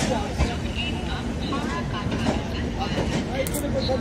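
Rajdhani Express passenger coaches rolling past along the platform as the train pulls out: a steady rumble with scattered knocks from the wheels. Voices are mixed in.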